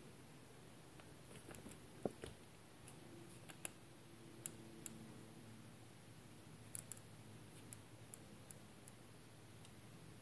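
Near silence: faint room tone with a dozen or so faint, scattered ticks and clicks as a waterbrush works paint on paper.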